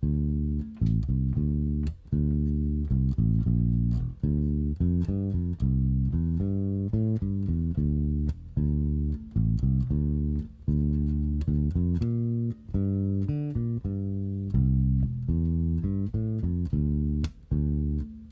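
Electric bass guitar played fingerstyle: a bass line of short plucked notes, several a second with a few brief pauses, built from major pentatonic and triad shapes played in one hand position without shifting.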